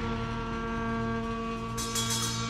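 Background music in a quieter held passage: a sustained chord of steady tones, with light percussion ticks coming in near the end.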